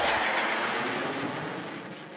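A rushing whoosh sound effect with no distinct pitch, loud at first and fading away steadily throughout.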